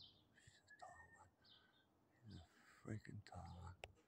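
Faint, short high bird chirps repeating every second or so among backyard trees, with a faint whisper in the second half.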